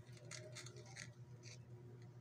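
Faint scraping and tapping of a serving paddle scooping steamed rice and camote out of an aluminium pot, a few soft strokes, over a low steady hum.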